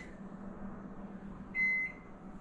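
Microwave oven beeping: a single high electronic beep near the end, over a faint steady hum, the first of a run of beeps about a second apart.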